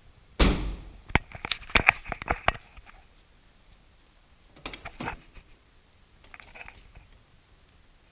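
2009 Jeep Patriot's rear liftgate slammed shut about half a second in, followed by a quick run of clicks and knocks. A few more clicks come about five seconds in, and a softer rattle near the end.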